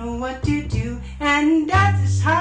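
An upright double bass played pizzicato, plucked low notes under a woman's singing voice.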